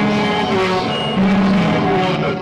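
Live experimental noise music from electronics and electric guitar: a loud, dense wash of droning noise with held tones and sliding pitches.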